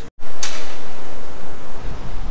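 A brief silent gap, then a loud, steady rushing noise with no distinct tone or rhythm that fades slightly near the end.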